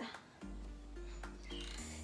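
Calm electronic background music with a low, steady bass line and soft held notes.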